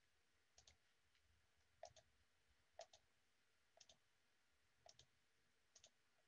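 Faint computer mouse clicks, each a quick pair of clicks, about once a second.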